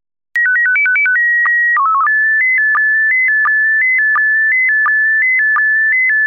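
Slow-scan television (SSTV) signal: a single whistling tone that jumps between a few set pitches. After a short silence a new transmission starts, with a quick run of stepped tones, a held tone and a brief low warble (the header that announces the picture mode). It then settles into the picture's scan lines: a steady tone broken by a short low blip about every 0.7 seconds, the line sync pulses.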